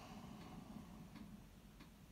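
Near silence: faint room tone with three faint, irregularly spaced ticks.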